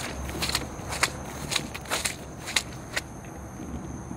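Footsteps through soaking-wet long grass at a walking pace, about two steps a second, stopping about three seconds in. A steady high insect trill runs behind them.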